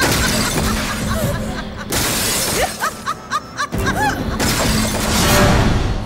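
Loud, dramatic film soundtrack: music mixed with crashing, shattering sound effects. It comes in sudden surges, about two and nearly four seconds in, and swells to its loudest just before the end.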